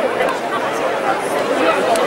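Large outdoor crowd chattering: many voices talking at once in a steady babble, with no single voice standing out.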